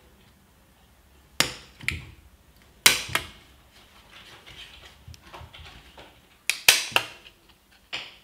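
Handheld metal single hole punch snapping through a paper card: sharp clicks in three quick groups, about a second and a half in, about three seconds in, and near the end, with faint paper rustling between punches.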